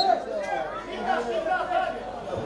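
Several voices on a football pitch shouting and calling over one another, with a short high-pitched sound right at the start.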